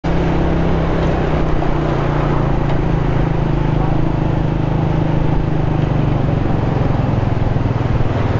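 Motorcycle engine running at a steady cruise, heard from the rider's seat, over road and traffic noise.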